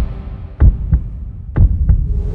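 Deep double thumps in a heartbeat rhythm, one lub-dub pair about every second, as the music fades out.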